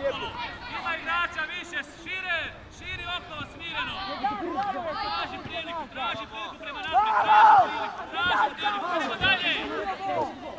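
Overlapping shouts and chatter of many voices around a youth football pitch, with no single voice standing out for long. One louder shout comes about seven seconds in.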